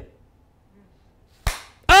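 Near silence, broken near the end by two sharp hand claps about half a second apart.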